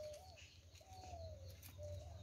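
A dove cooing faintly in the background: a few low, drawn-out notes, one of them falling slightly in pitch, over a low steady hum.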